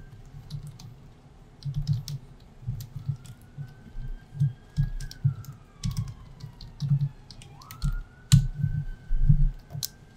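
Typing on a computer keyboard: irregular runs of keystrokes with short pauses between them, each stroke a click with a dull low thud.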